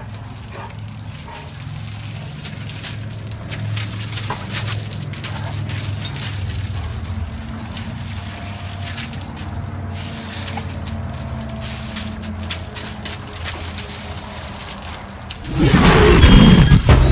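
Garden hose spraying water onto gravel, with a light patter and crackle over a steady low hum. Loud music with a boom cuts in about half a second before the end.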